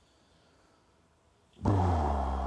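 Near silence, then about one and a half seconds in a man clears his throat: a low, rough voiced sound lasting about a second.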